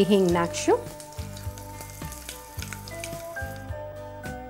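Whole spices, dried red chillies and curry leaves sizzling in hot ghee in a steel pot, a tadka just seasoned with asafoetida. The sizzle cuts off suddenly near the end as background music with a melody comes up.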